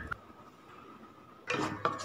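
Quiet room tone at first. About one and a half seconds in, a wooden spatula starts scraping and stirring thick mango pulp in a nonstick pan.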